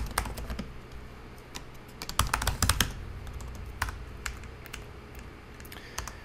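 Typing on a computer keyboard: a few keystrokes at the start, a quick run of them about two seconds in, then scattered single key presses.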